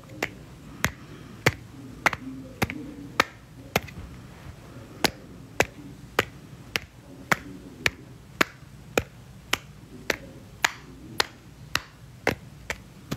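A steady beat of sharp clicks, a little under two a second, evenly spaced, with faint low sound in between.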